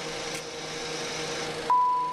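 Cessna Citation X cockpit with a steady avionics hum and fan hiss; near the end the hiss briefly cuts out and a single short high-pitched warning tone sounds, the master caution alert coming on because the door is open.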